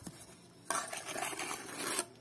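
Steel trowel scraping and spreading wet mortar across the end of a solid concrete block. It is a gritty scrape that starts a little under a second in and stops sharply near the end.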